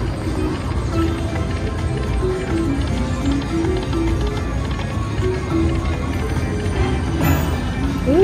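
Whales of Cash video slot machine playing its free-game bonus music while the reels spin: a tune of short, steady notes over an even, rhythmic beat.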